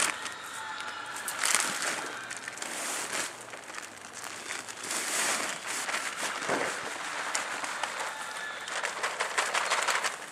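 Plastic bag of garden soil rustling and crinkling as it is lifted and tipped, with damp soil sliding out into a plastic sandbox in irregular surges.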